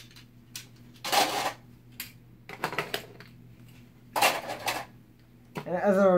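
Plastic Beyblade launchers and parts clattering and knocking together as they are gathered up and put away by hand, in three or four short bursts of rattling with quiet gaps between.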